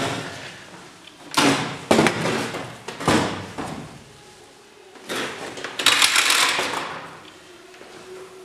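Sheet-metal fluorescent light fixture housing being handled and turned over on a tabletop: scraping, sliding clatters about a second and a half in, again at three seconds, and a longer one from about five to seven seconds.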